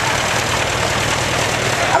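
Crowd applauding: steady, even clapping, with a low steady hum underneath.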